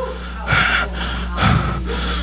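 A man breathing hard into a handheld microphone, catching his breath: two sharp, noisy breaths about a second apart.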